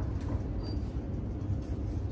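Steady low rumble of room noise, with a couple of faint clicks.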